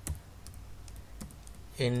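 Computer keyboard being typed on: a scattering of light, irregular key clicks.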